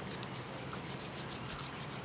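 Open wood fire burning: a steady hiss with faint, quick crackles.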